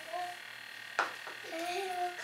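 Baby making short croaky vocal sounds, with a single sharp click about a second in.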